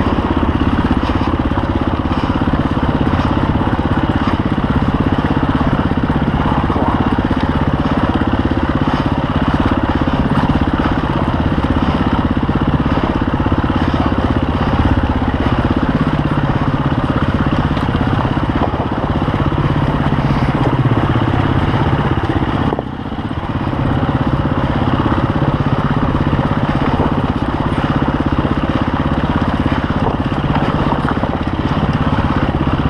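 KTM EXC-F 350 four-stroke single-cylinder enduro engine running steadily under load over a rocky trail climb, heard close from an onboard camera. Its sound drops briefly about three-quarters of the way through, then picks up again.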